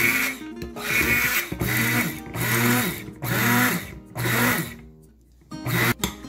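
Handheld immersion blender whipping heavy cream in a ceramic bowl, switched on and off in short pulses of under a second, each spinning up and down. A pause comes about five seconds in before one last brief burst.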